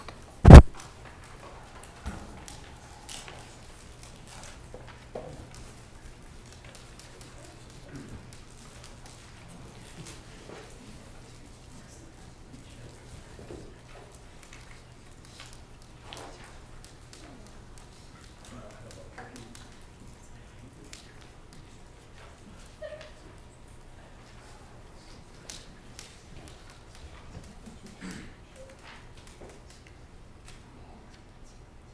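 A single loud thump about half a second in, picked up by the podium microphone, then faint scattered clicks and taps from the computer's keyboard and mouse as it is logged into, over a steady low hum.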